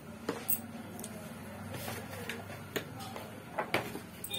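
A few light clicks and clinks of kitchen utensils against a steel kadhai of roasted peanuts, over a low steady hum.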